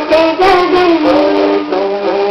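A woman singing a Hindi song, her melody sliding between notes, over steady backing music.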